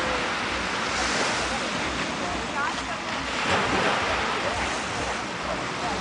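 Open sea water washing and lapping against the boat, with wind gusting on the microphone; a steady rushing wash throughout.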